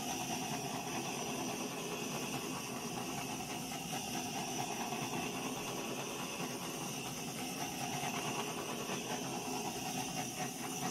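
Steady hiss of a handheld butane torch being passed over wet acrylic pour paint to burst the surface bubbles.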